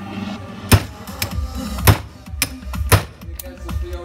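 A hammer strikes a screwdriver held against the metal casing of a car engine control unit, driving it in to break open the corroded case. Three hard metallic blows land about a second apart, with lighter knocks between them, over background music.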